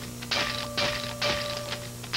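Rhythmic mechanical ratcheting or clacking, about two strokes a second, each stroke a short noisy burst with a faint steady tone under it.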